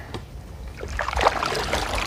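Wooden canoe paddle working the water among lily pads: splashing and dripping that pick up about a second in, over a low steady rumble.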